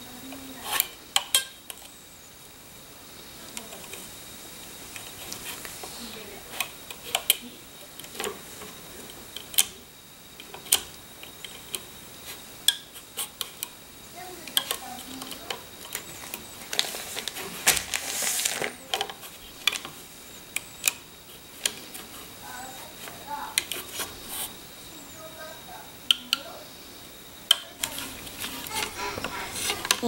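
Plastic crochet-style hook clicking and tapping against the pegs of a plastic rubber-band loom as bands are hooked and pulled up over the pegs: scattered, irregular sharp clicks, with a brief rustle about eighteen seconds in.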